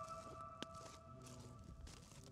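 Faint tail of background music: a held note fading out and dying away near the end, with one brief click about half a second in.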